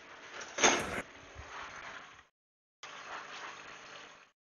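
Faint background hiss from an open microphone, with one short noisy sound a little over half a second in. The hiss cuts out altogether for about half a second around the two-second mark, then returns.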